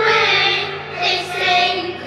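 Children's voices singing with musical accompaniment, with a short break between phrases about a second in.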